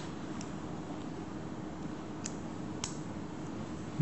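Three faint, sharp clicks of a plastic lens cartridge being fitted into a Monarch IOL injector handpiece, over a steady low hum of room noise.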